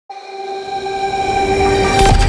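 Intro sound for a title card: a held, horn-like chord that starts abruptly and grows louder, with a low rumble building beneath it toward a hit at the end.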